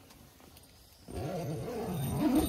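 A man's drawn-out, closed-mouth 'mmm' that wavers in pitch, starting about a second in after a moment of near silence.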